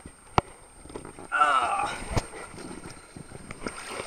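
A rider's inflatable tube setting off down a waterslide: water splashing and sharp knocks of the tube, one before and one after a short, loud call from a person's voice about a second and a half in.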